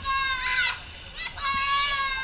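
Children's shrill, drawn-out calls, two of them, each held for most of a second: the first with a slight pitch wobble near its end, the second starting about a second and a half in.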